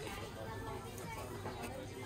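Quiet shop background: a low, steady hum of store ambience with faint, indistinct voices.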